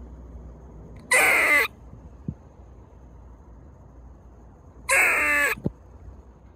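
Two loud, harsh animal calls, each a little over half a second long, about four seconds apart.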